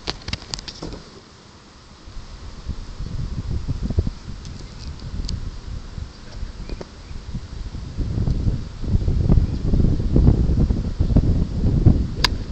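Wind buffeting the microphone: an uneven low rumble that builds about halfway through and grows strongest near the end, with a few light clicks near the start.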